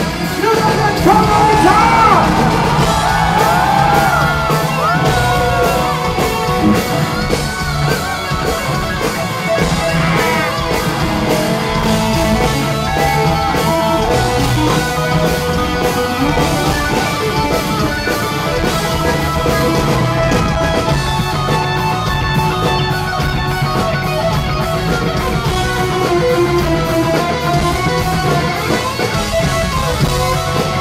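Funk-metal band playing live, loud and continuous: an electric guitar through Marshall amps plays lead with bent, sliding notes over bass and drums.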